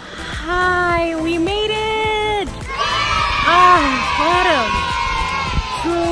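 Women cheering in long drawn-out 'yaaay' cries, each held for about a second, with two voices overlapping in the middle.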